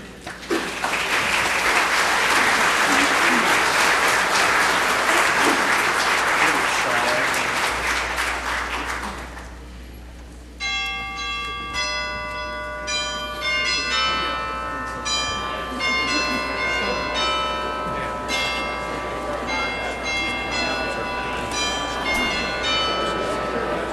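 Congregation applauding for about nine seconds. Then, from about ten seconds in, bells ring out in a run of overlapping struck notes at many pitches.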